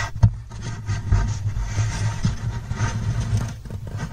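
Endoscope camera probe rubbing and knocking lightly against the wood inside an acoustic guitar's body, over a low steady hum, with one sharper knock near the start.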